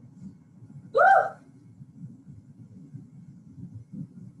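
A single short, high-pitched vocal yelp from a woman about a second in, its pitch rising and falling, over a low steady hum.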